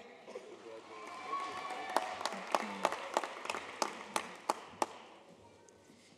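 Audience applauding, with a few sharp individual claps standing out and some faint cheering voices; it swells about a second in and dies away before the next name is read.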